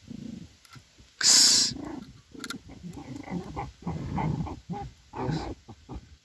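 German hunting terriers (Jagdterriers) fighting a fox underground in its earth: a rapid run of short, low-pitched dog sounds, with one loud burst just over a second in.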